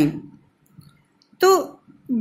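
A teacher speaking Hindi: a sentence trails off, a short pause with a few faint clicks, then the single word "to" ("so").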